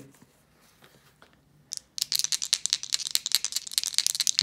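About two seconds of near silence, then a fast, irregular run of small sharp clicks: dice rattling as they are shaken.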